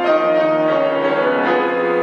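Grand piano playing a slow introduction: sustained chords ringing and fading, with a new chord struck about a second and a half in.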